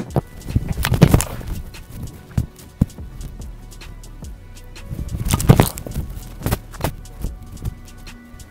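Background music with a clicking, percussive beat, over which a football is kicked off a tee: a hard thump about a second in. A second loud surge comes about five and a half seconds in.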